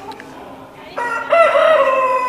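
A rooster crowing, starting about a second in: a loud call that bends up and down in pitch and then holds one note.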